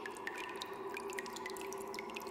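An irregular patter of small water-drip sounds over a steady, faint droning tone: the ambient sound-design intro of a music track.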